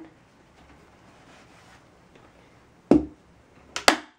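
A hand staple gun firing staples through bias tape and fabric into the wooden table frame: one sharp snap about three seconds in and another near the end, with soft handling of the tape between.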